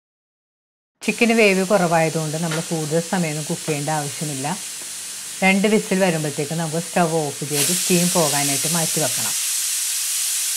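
Stovetop pressure cooker hissing as steam is let out to release its pressure before opening, the hiss growing louder about seven and a half seconds in.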